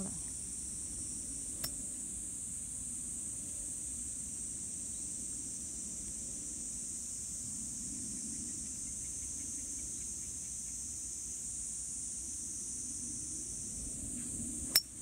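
Steady high-pitched drone of insects, with one short click about two seconds in.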